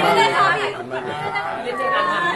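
Several people talking at once: overlapping voices and chatter.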